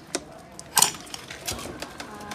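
A few short clicks and knocks of a motor scooter being handled by its handlebar, seat and kick-start lever, with the engine not running: three sharp hits, the loudest about a second in, the last a duller thud.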